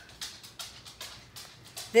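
Faint rustles and light ticks of magazine paper being handled and pressed down while glue is squeezed on from a bottle. A voice starts right at the end.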